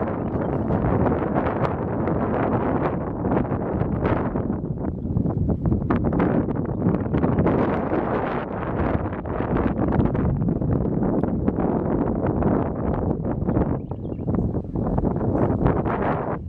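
Wind blowing across the camera microphone in open desert: a loud, gusting rumble that rises and falls unevenly.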